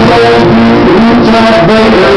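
Acoustic guitar strummed and picked in a live song performance, recorded loud.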